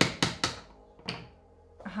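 A hammer tapping the back of a knife blade to split a slab of beeswax on a wooden board: a quick run of sharp taps, about four a second, that stops about half a second in, then one more knock about a second in.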